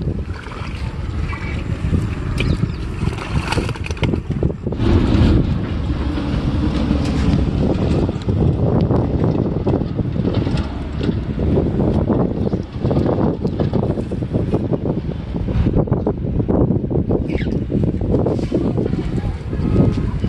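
Wind buffeting the microphone: a heavy, uneven low rumble that swells and drops in gusts.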